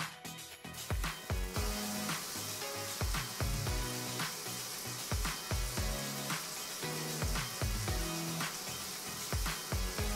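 Background music with a steady beat. From about a second and a half in, a steady hiss of shower water spraying onto a shower tray joins it.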